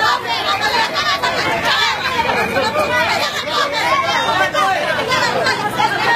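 Crowd babble: many people talking over one another at once, loud, with no single voice standing out.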